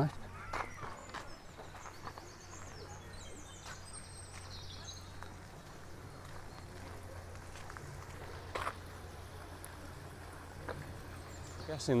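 Quiet outdoor ambience: a low steady rumble, faint high bird chirps a few seconds in, and a few soft knocks, one louder than the rest about two-thirds of the way through.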